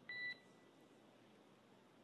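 One short, high electronic beep of about a third of a second right at the start, a tone on the mission's air-to-ground radio loop just after a call ends, followed by near silence.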